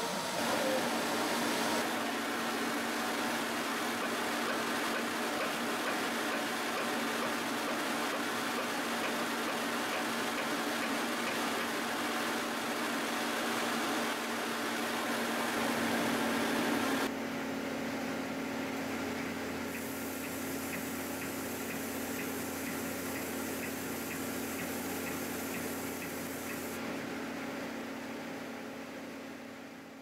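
Water spray running inside an industrial aqueous parts washer: a steady rushing hiss with a low steady hum under it. The sound changes abruptly about halfway through and fades out near the end.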